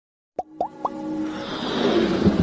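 Animated logo-intro sound effects. About a third of a second in, three quick pops rise in pitch one after another, then a swelling whoosh builds with a held tone beneath it.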